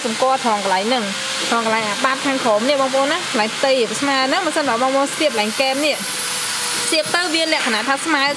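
A man talking steadily, over a constant rushing hiss in the background.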